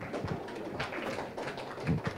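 A small group of people clapping, scattered and uneven.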